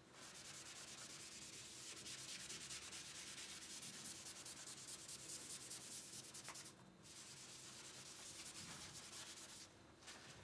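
Hand-colouring on paper: rapid back-and-forth rubbing strokes of an art medium against the sheet, with a short pause about seven seconds in.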